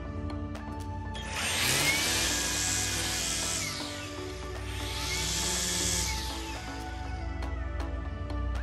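Battery-powered EGO string trimmer with an Echo Speed-Feed 400 head cutting grass, run up twice for a few seconds each, its whine rising and then falling each time. Background music plays underneath.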